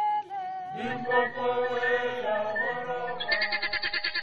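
Soundtrack music of several voices chanting or singing together, with long held, gliding notes. Shortly before the end a quick rhythmic pulse joins in.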